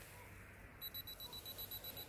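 A DSLR's self-timer beeping rapidly, about eight short high beeps a second, starting almost a second in: the timer counting down to release the shutter.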